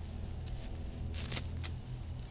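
Rustling and a few short, sharp clicks as a harness is handled and fitted onto a small dog, over a steady low hum; the sharpest click comes a little past halfway.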